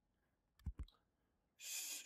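Two faint computer mouse clicks in quick succession, followed near the end by a soft intake of breath.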